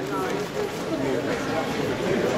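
Indistinct voices of several people talking at once in a room, with no single voice clear.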